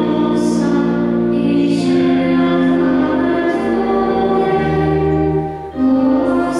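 Pipe organ playing sustained chords while a woman sings a hymn over it, a line at a time, with a brief break just before the end as one phrase ends and the next begins.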